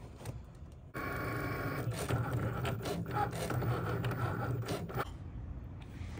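Cricut Maker cutting machine at work on vinyl: its motors start about a second in with a brief whine, then whir steadily with small clicks as the carriage and rollers move the cutting mat. It stops about five seconds in.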